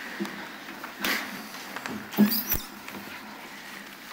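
Sheets of paper rustling and shuffling as documents are handled at a table close to the microphones, with a couple of light knocks about two seconds in.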